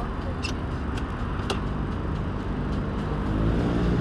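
Steady rumble of street traffic, growing a little louder near the end, with two faint clicks about a second apart.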